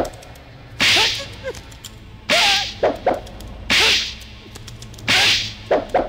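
An aerosol spray can hisses in four short bursts about a second and a half apart, sprayed at a man's raised armpits. Each burst is followed by brief vocal noises.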